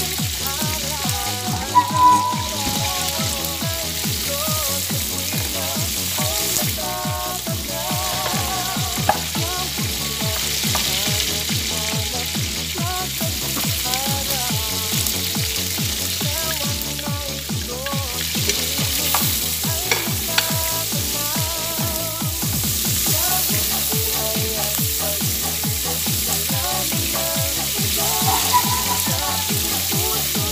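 Sliced onions and hamour (grouper) fish pieces frying in hot oil with a steady sizzle, the onions stirred with a wooden spoon. Background music with a regular beat plays underneath.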